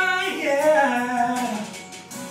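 A single voice singing a held, melodic phrase that slides down in pitch and fades out near the end.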